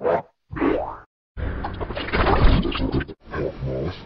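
Chopped, effects-distorted cartoon audio: a short blip, a bouncy rising-and-falling pitch glide, a brief gap, then a dense, loud distorted stretch that cuts off abruptly and gives way to a pitched, warbling sound.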